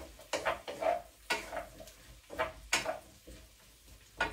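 A spatula stirring chopped courgette, onion and chilli in a frying pan: a string of scrapes and knocks against the pan, in quick clusters through the first three seconds and quieter in the last second.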